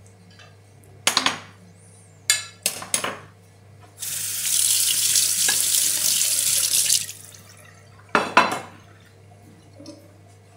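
Crockery and cutlery clinking together in short clusters, then a kitchen tap running steadily for about three seconds, then more clinks of dishes.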